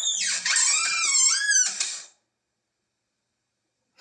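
Door hinge squeaking as the door swings: a wavering high squeal that lasts about two seconds, then stops. The hinge is dry and wants oiling.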